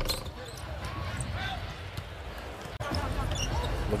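Arena crowd noise and court sounds of a live basketball game broadcast. The sound drops out briefly at an edit cut near three seconds in.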